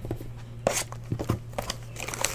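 Hands handling a shrink-wrapped trading-card box on a tabletop: a few light knocks and plastic rustles, over a steady low hum.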